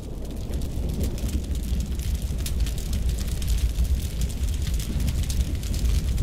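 Fire sound effect: a deep, steady rumble of burning flames with crackling on top.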